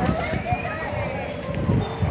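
Indistinct voices of people talking nearby, over low rumbling noise from the camera being carried while walking.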